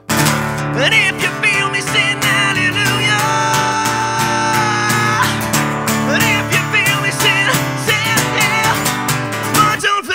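A man singing a rock song to a strummed acoustic guitar, coming in suddenly at full level and holding one long note in the middle.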